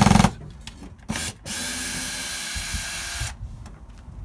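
A cordless drill/driver runs in a short burst about a second in, then runs steadily for about two seconds and stops abruptly, working on a wooden trellis panel that has to come off. A loud burst right at the start may be the drill or the end of a word.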